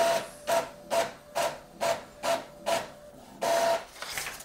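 Epson XP-5200 inkjet printer printing a page: the print-head carriage makes short, even sweeps about twice a second, each with a whirring tone. Near the end comes one longer run as the sheet feeds out.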